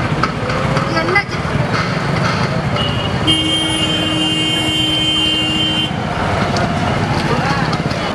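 Street crowd chatter and passing traffic. About three seconds in, a vehicle horn sounds as one steady note held for about two and a half seconds.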